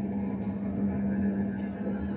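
A steady low hum, one even tone with a weaker deeper one beneath it, unchanging throughout.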